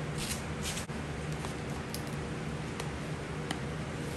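Steady low background hum with a few faint, brief clicks of handling.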